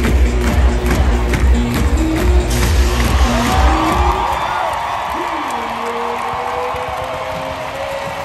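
Loud stadium music over the sound system with a heavy bass beat, about two beats a second, which stops about halfway through. After it, a football stadium crowd cheers, and long held tones slide slowly upward over the noise.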